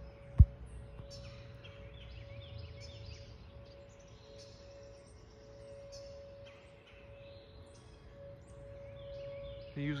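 Distant Whelen outdoor tornado warning sirens sounding a steady tone during their monthly test, two of them holding pitches a little apart, with birds chirping over them. A single sharp knock about half a second in is the loudest sound.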